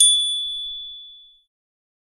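A single high-pitched bell ding, the notification-bell chime of a subscribe animation, struck once and ringing out until it fades away within about a second and a half.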